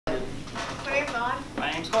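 Students' voices talking in a classroom, with a few light clicks and clatter among them.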